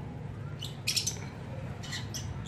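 Small birds chirping in short, high calls, a cluster about a second in and another near the end, over a steady low hum.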